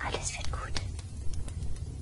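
A woman's soft, breathy whisper over a steady low hum, with a couple of faint clicks.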